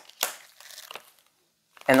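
Tarot cards being handled as the next card is drawn from the deck: a short sharp snap, then faint papery rustling.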